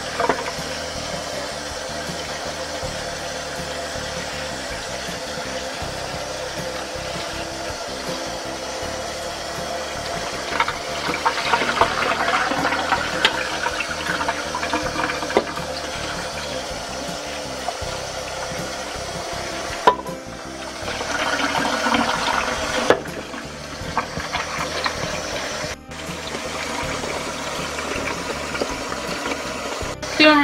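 Kitchen faucet running, water splashing into a bowl being rinsed out and over chopped salted zucchini, peppers and onions in a strainer in the sink. The flow is steady, with a few brief breaks past the middle.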